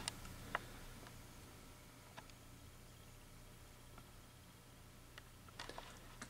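Faint steady low hum from a running T12 rapid-start fluorescent fixture's ballast, suspected to be magnetic, with two 40-watt tubes lit. A few faint small clicks about half a second in, around two seconds in and near the end.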